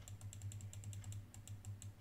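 Rapid, faint, irregular clicking of computer keys as a charting program is switched to another view, over a low steady hum.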